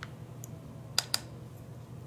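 Two quick sharp clicks about a second in, a small plastic-and-metal tap from handling an eyeshadow palette and makeup brush while picking up shadow, over a steady low hum.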